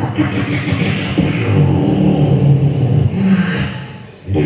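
Live beatboxing into a handheld microphone: low, pitched vocal bass tones layered with mouth-made percussion. It drops away at the very end.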